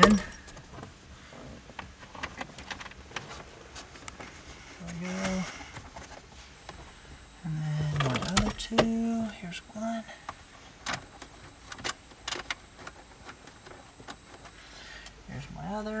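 Scattered small clicks and taps of screws being fitted and driven by hand into a plastic dashboard bracket, growing more frequent in the second half.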